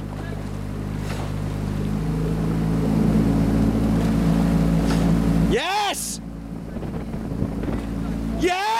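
The coaching launch's motor runs steadily, getting louder from about two seconds in. A short shouted word cuts in near six seconds.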